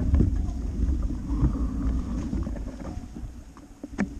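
Wind rumbling on the bike-mounted camera's microphone, with tyres rolling on a dirt road, as a bicycle is ridden. The noise fades steadily over the few seconds, with a few faint clicks.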